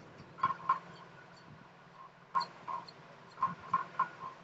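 Faint short chirps from a bird, in quick groups of two or three, over quiet room tone.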